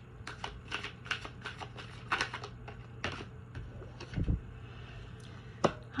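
A deck of oracle cards being shuffled by hand: a quick run of card clicks and flicks, about five a second, for the first three seconds, then a few scattered taps and one dull low thump about four seconds in.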